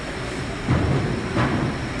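Low rumbling noise of a battery factory's production floor, swelling louder about a second in.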